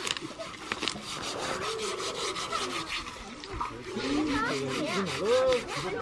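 Fast, rhythmic scraping strokes through the first half, with people's voices talking over them in the second half.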